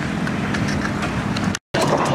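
An engine running steadily, a low hum with no change in pitch. The sound drops out for a moment about one and a half seconds in.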